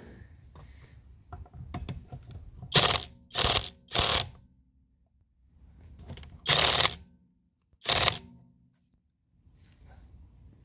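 Kamolee cordless impact wrench run in five short bursts, three in quick succession and two more later, its hammer mechanism rattling as it undoes a car's wheel nuts. The nuts had been done up hard with a pipe on the wrench, yet come loose without strain.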